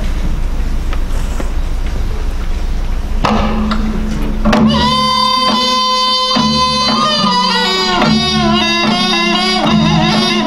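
Korean traditional accompaniment music for the Pyongyang sword dance starting up. A low rumble gives way to a steady held drone about three seconds in. About halfway through, a loud wind-instrument melody begins with held notes that then slide and bend in pitch.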